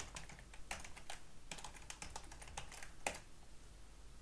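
Computer keyboard typing: a quick, irregular run of key clicks, with one louder keystroke about three seconds in.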